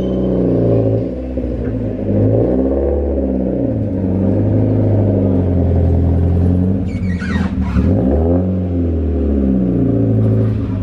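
Mazda Miata's four-cylinder engine running at low speed, its revs rising and falling several times as the car is eased up onto an alignment rack. About seven seconds in there is a brief high, falling squeak.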